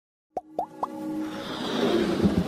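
Animated intro sting: three quick plop sound effects about a quarter second apart, each rising in pitch, then music that swells steadily louder.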